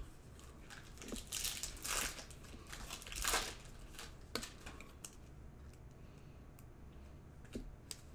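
Foil wrapper of a Panini Contenders basketball card pack being torn open and crinkled by hand. The wrapper makes short rustling tears, the loudest about three seconds in, followed by a couple of light clicks.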